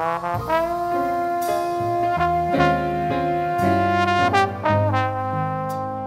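Jazz ensemble music: horns play long held notes in chords, with lower notes moving underneath. The horns come in loudly right at the start.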